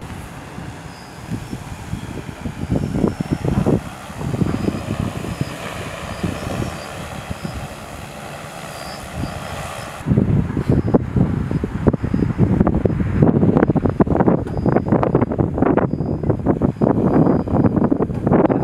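Rotor drone of a TopXGun F10 agricultural spraying multirotor flying, heavily mixed with wind buffeting the microphone. The sound changes abruptly about ten seconds in, and the wind buffeting is stronger after that.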